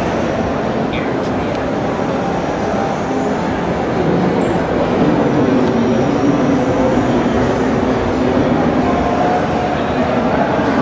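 Indistinct crowd chatter over the steady rumble of a busy exhibition hall, getting a little louder about four seconds in.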